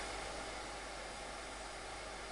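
Steady hiss of room tone and recording noise with a faint low hum underneath; no distinct event.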